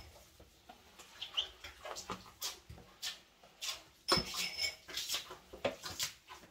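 Broom being swept over a hard floor: irregular brushing strokes and light knocks, with a short high squeak about four seconds in.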